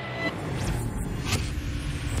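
Cinematic logo-sting sound effect: a building whoosh over a deep rumble, with two brighter swishes sweeping through partway in.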